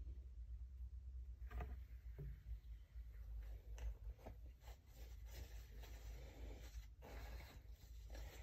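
Faint, irregular light scratching and rustling, a series of small scrapes and ticks, over a low steady hum.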